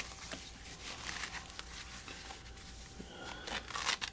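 Scratchy, crackling peeling and rustling of a fabric leg compression wrap's hook-and-loop straps being pulled open by hand, with scattered small clicks.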